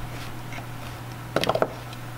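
Hands working cut-sock fabric loops on a cardboard-box loom with wooden clothespins: soft handling noise, then a quick cluster of four or five clicks and scrapes about one and a half seconds in. A steady low hum sits underneath.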